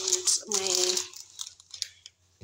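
Rustling and crinkling of a reusable shopping bag as groceries are handled and lifted out of it, with a short voiced sound, a brief word or hum, about half a second in.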